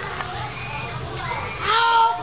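Children's voices calling and shouting over a steady background of chatter, with one loud, high call near the end.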